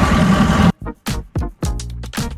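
Open-cab Mahindra jeep driving along a road, with engine and wind noise, cut off suddenly less than a second in by electronic dance music with a fast, steady beat.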